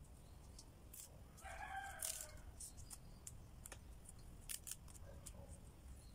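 Faint scattered snaps and clicks of cassia leaflets being stripped from their stems into a stainless steel bowl. A brief faint call from a distant animal comes about one and a half seconds in.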